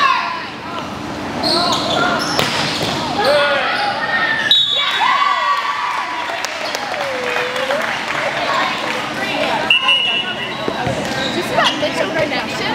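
Volleyball being played in a gym: players shouting and cheering as a rally ends and the point is won, with a few sharp ball hits or slaps among the calls.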